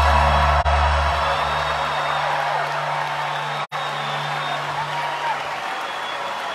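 The last sustained low notes of a live rock band's song die away over the first couple of seconds, and an arena crowd cheers and whoops as the music ends.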